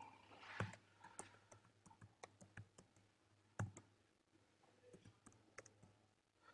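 Faint computer keyboard typing: irregular key clicks, with a louder keystroke about half a second in and another about three and a half seconds in.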